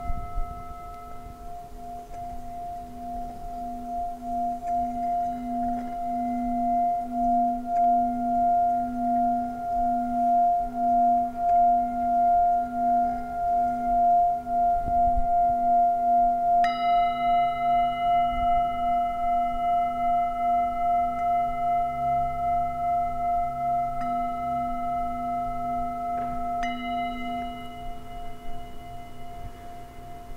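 Metal singing bowl sounded with a wooden mallet, its deep two-note hum swelling over the first several seconds and ringing on with a slow throb. It is struck again about 17 seconds in and once more near the end, each strike adding a brighter, higher ring.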